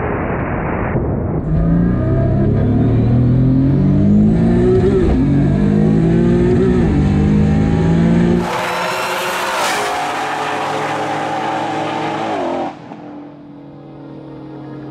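Race car engine at full throttle down a drag strip, its pitch climbing through the gears and dropping sharply at each shift. A differently recorded stretch of the run follows, and the engine sound falls away suddenly near the end.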